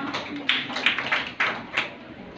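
A class of children clapping together, a short run of five or so sharp claps in unison about a third of a second apart.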